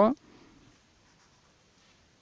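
A spoken word trails off right at the start, then the faint scratch of a felt-tip marker writing digits on paper.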